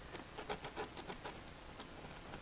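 Faint scratching and light tapping of a pen tip pressed and drawn over carbon-fiber vinyl wrap on a laptop lid, working the wrap into the indented logo; the clicks come thicker in the first second and thin out after.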